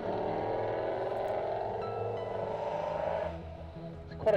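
Engine of a classic saloon car running steadily under load as it climbs a hill-climb course, with a sustained note that fades away about three seconds in.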